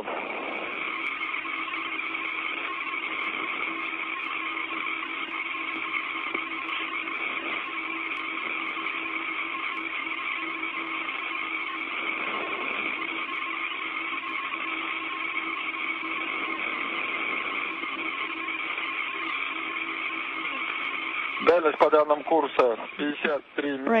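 Steady hiss of an open space-to-ground radio channel, with a few faint steady hum tones running through it. A radioed voice cuts in near the end.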